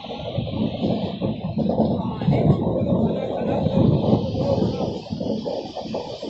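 A train running, heard from inside a passenger carriage: a steady heavy noise with a fast irregular rattle.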